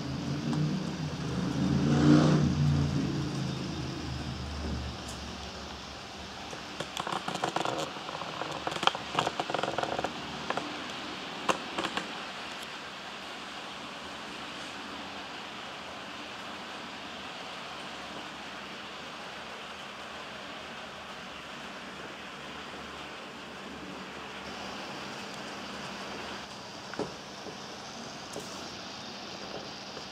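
Liliput BR 01.10 model steam locomotive running past with its coaches: a motor and gear hum that builds and peaks about two seconds in, then fades. A run of sharp clicks follows as the wheels cross the track, and a steady low rolling noise stays under it.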